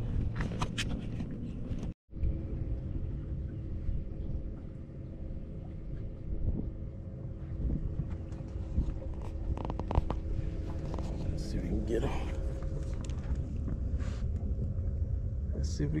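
Wind rumbling on the microphone, with a faint steady hum under it and a few quiet, indistinct words near the end.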